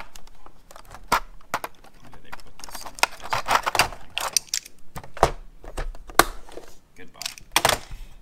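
A clear hard-plastic case and a small metal clay extruder with its dies being handled: a string of sharp clicks, knocks and rattles, with the tool set down on a stainless steel bench.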